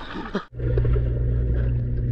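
Water splashing at the surface of a swimming pool. About half a second in it cuts off suddenly to a steady, muffled low hum of the pool heard underwater, as through a submerged camera.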